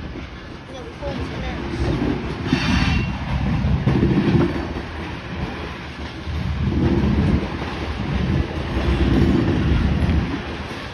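Diesel locomotives rolling slowly past at close range. Their engines run with a low rumble, and the wheels clack over the rail joints in repeated heavy surges.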